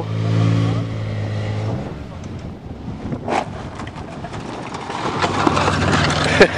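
A 4x4 camper van's engine running steadily with its exhaust knocked off, then stopping abruptly about two seconds in; a rough rushing noise with a short sharp sound follows.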